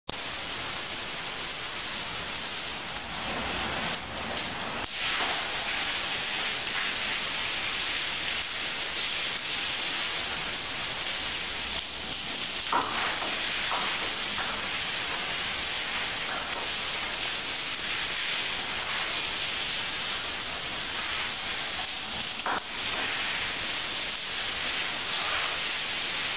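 Shower running: a steady, even hiss of water spraying from the shower head, with a couple of faint knocks about halfway through and near the end.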